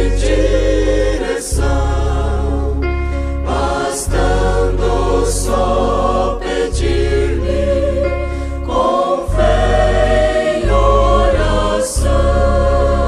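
A choir singing a Christian hymn over instrumental accompaniment, with a held bass note that changes every second or two.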